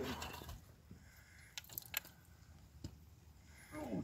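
Faint scraping of gloved hands digging through dump fill of dirt and broken clam and oyster shells, with a few sharp clicks of shell or glass around the middle.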